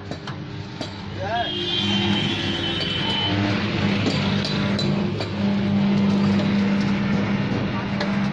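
A motor vehicle engine running with a steady droning hum that swells about a second and a half in and then holds.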